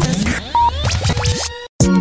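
Radio break jingle: music with scratch-style sound effects and sweeping gliding tones, cutting to a brief silence near the end.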